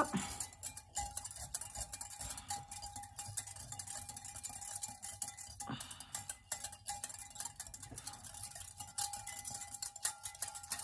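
Small wire whisk beating a liquid mixture in a glass measuring cup, its wires clinking and scraping against the glass in a fast, continuous run of light ticks.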